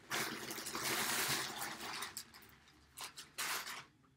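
Plastic mailer bag being opened and handled: dense crinkling and rustling for about two seconds, then a few sharp crackles.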